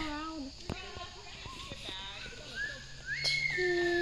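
Children's voices talking quietly and indistinctly, with a steady high-pitched note held for about a second near the end.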